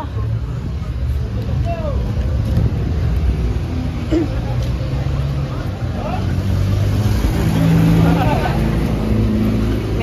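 Street traffic: vehicle engines running close by on the road, a low rumble that grows louder in the second half as a vehicle passes.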